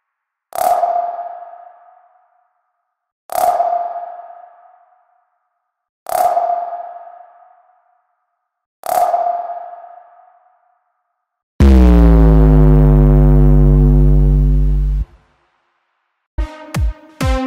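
Synthesized intro sound effects: four sonar-like pings, each fading out, about every three seconds, then a loud low synth tone that slides down in pitch, holds, and cuts off suddenly about three and a half seconds later.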